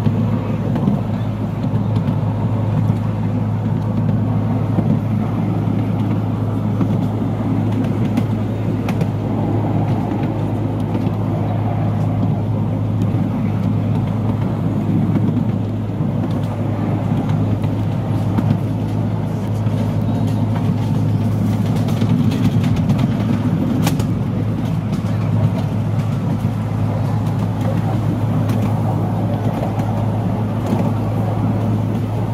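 Miniature railway train running steadily along 10¼-inch gauge track, heard from its rear coach: a continuous rumble and rattle of the coaches on the rails with a steady low hum.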